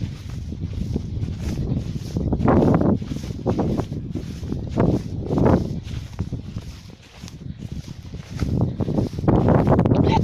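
Wind buffeting a phone microphone, with rustling of dry grass and footsteps, louder in surges about two and a half, five and nine seconds in.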